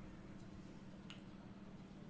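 Near silence: faint room tone with a low steady hum, and two faint clicks about half a second and a second in.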